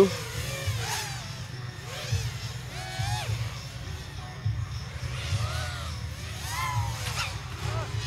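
Racing quadcopter motors whining in the distance, their pitch rising and falling with throttle, over a low steady rumble.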